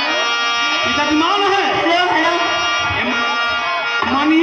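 Harmonium holding steady reed chords while men's voices speak and sing over it.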